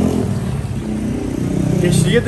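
Motor vehicle engine running steadily, a low hum that grows a little louder near the end.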